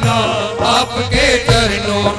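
Live devotional bhajan music: male voices singing into microphones over a keyboard, with drum strokes about every half second.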